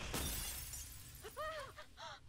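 A drinking glass shattering in someone's grip, its breaking noise fading over the first second, on the TV episode's soundtrack. A brief voice sound follows about a second and a half in.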